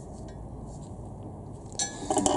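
Faint handling of small metal parts under a car, with a few tiny ticks and one light metallic clink near the end.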